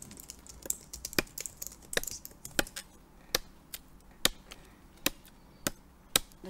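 A large knife blade chopping into a wooden pole: a steady series of sharp strikes, slightly more than one a second. It is notching the opposite side of the pole to weaken it for splitting.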